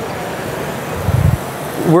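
Steady sizzling hiss from pans cooking on a gas stove, with a short low thud about a second in.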